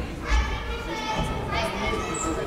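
Several girls' voices calling out and chattering at once in a large sports hall, with a brief low thump about a third of a second in.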